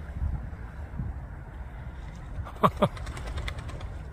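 Two short duck quacks close together about two-thirds of the way in, from spot-billed ducks on the water, over a low steady outdoor rumble.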